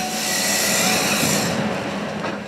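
Tracked timber harvester working a log with its processor head: the machine runs steadily under a loud hissing noise that eases near the end.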